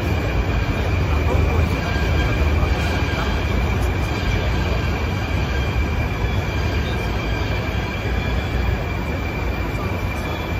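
Moscow metro train noise at a station platform: a loud, steady low rumble with a thin, steady high whine over it, easing slightly toward the end.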